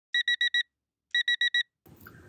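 Digital alarm clock beeping: two bursts of four quick high-pitched beeps, about a second apart.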